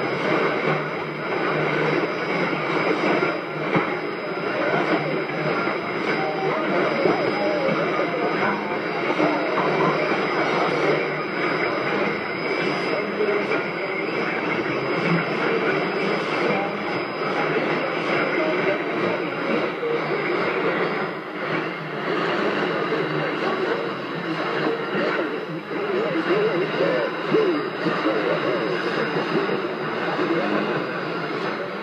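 Shortwave AM broadcast of Rádio Nacional da Amazônia on 6180 kHz, played through a Toshiba RP-2000F receiver's speaker. A voice comes through under a steady hiss of static, and the sound is thin, with little bass and little treble.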